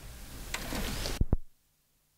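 Faint rustling, then two sharp clicks close together a little over a second in as a front-panel button on a Nakamichi ZX-9 cassette deck is pressed; the sound then cuts off abruptly to silence.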